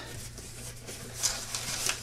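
Hands handling a cardboard shipping box and the white packing wrap inside: a faint rustle of cardboard and wrap, a little stronger just past the middle, over a steady low hum.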